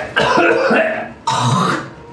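A man's throat clearing hard in a few loud bursts of about half a second each.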